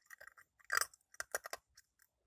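Ice being bitten and crunched between the teeth: a quick run of sharp crunches, the loudest a little under a second in, followed by several smaller cracks.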